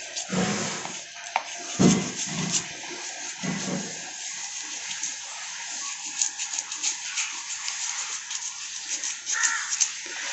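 A kitchen knife scraping the scales off a pearl spot fish on a cutting board: a steady rasping with quick ticks as the scales flick off, and a few dull knocks in the first few seconds.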